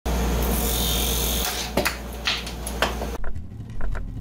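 Robust wood lathe spinning a maple burl box blank while a hand-held turning tool cuts it: a steady hiss of cutting over the lathe's low hum, with a few sharp ticks in the second half. The sound cuts off suddenly about three seconds in.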